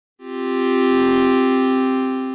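A held electronic synthesizer chord of two low notes with a bright buzzy edge, coming in just after the start and swelling to full loudness over about a second: the opening sting of an intro.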